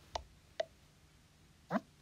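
iPad VoiceOver gesture feedback as a finger drags up from the bottom edge: a faint click shortly after the start and a short blip about half a second in, the clicks that mark each stage of the swipe up to the dock, then a brief rising sound near the end.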